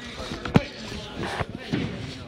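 A few irregular sharp thumps on a hard surface, the loudest about half a second in, over voices echoing in a gymnasium.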